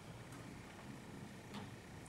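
Quiet room tone, with a faint click about one and a half seconds in.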